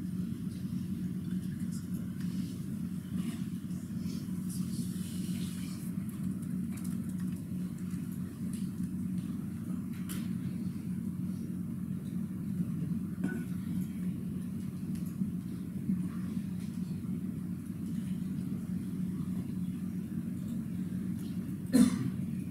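Steady low hum of room noise with a few faint ticks.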